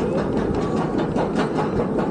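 Lift hill of a B&M floorless roller coaster pulling the train up. The chain runs with a steady rumble and clacking, with anti-rollback clicks several times a second.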